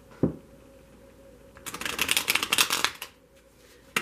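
A deck of tarot cards being riffle-shuffled by hand: a rapid run of card flicks lasting just over a second, a little before the middle. A single thump comes about a quarter second in.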